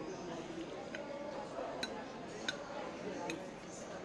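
Forks clinking against ceramic plates about four times, roughly once a second, over a background murmur of voices.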